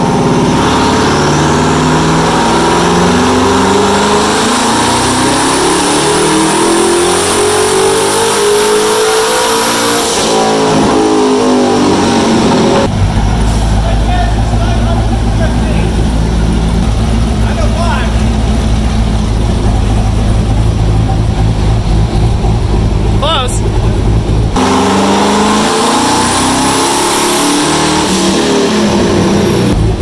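Twin-turbo Corvette C7 V8 on a chassis dyno, with the X-pipe off the exhaust, making a wide-open-throttle pull. The engine note rises steadily with a high turbo whistle climbing over it for about ten seconds, then falls away. A steady low drone follows, and near the end a second pull starts, its pitch climbing again.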